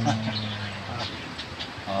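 A man's voice holds one long, steady-pitched note at the end of a chanted line of Pashto poetry recitation. After a short quieter gap, another drawn-out 'aah' opens the next line near the end.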